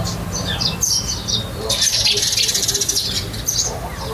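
Outdoor birds chirping in short, high calls, with a burst of rapid high chattering in the middle lasting about a second and a half, over a low steady rumble.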